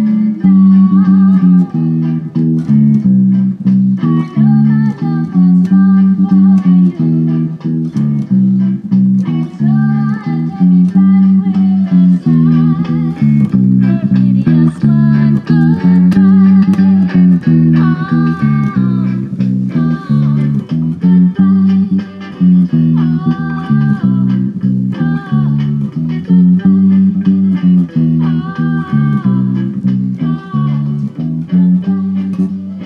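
Electric bass guitar played solo: a repeating riff of steady, evenly spaced notes that runs on without a break.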